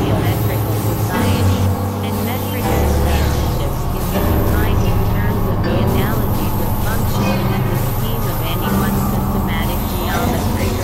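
Layered synthesizer drones and noise from a Supernova II and a microKorg-XL: steady low tones that shift pitch every second or two under a dense noisy texture, with short chirping sweeps higher up.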